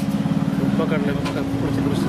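A man's voice speaking, over a steady low hum that runs throughout.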